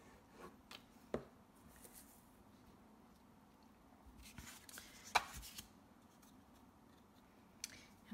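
Quiet handling of card stock and a glue bottle on a cutting mat: a few light taps and paper rustles, the sharpest tap about five seconds in.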